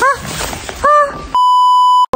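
A censor bleep: one steady, high electronic beep tone lasting under a second. It starts a little past the middle and blanks out all other sound while it plays.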